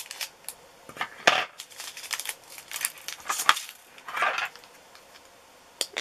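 Small clear plastic drill storage containers clicking and clattering as they are handled on a plastic tray, with scattered sharp clicks, the loudest a little over a second in and about three and a half seconds in, and a short scratchy rustle around four seconds in.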